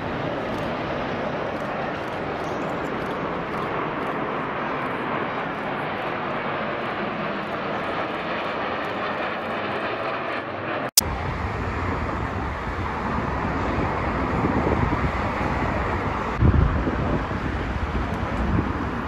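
Military jet aircraft flying over in formation, a steady, even jet roar. About eleven seconds in the sound cuts off abruptly and comes back as a deeper rumble, with a loud low thump near the end.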